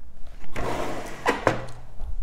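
Brother ScanNCut cutting machine being slid across a tabletop: a scraping rub with a low rumble and a few knocks.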